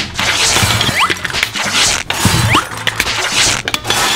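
Pressurized tennis ball cans being pulled open by their ring-pull metal lids. Each one lets out a rush of hissing air, about three in a row, over background music.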